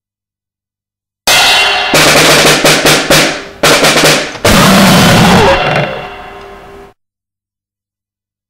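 A very short noisecore track: harsh drumming and noise that bursts in about a second in, stops and restarts abruptly a few times, and cuts off suddenly near the end, with dead silence either side.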